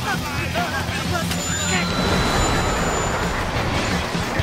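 A young man yells in the first second or so, then a steady rushing noise with a low rumble underneath fills the rest.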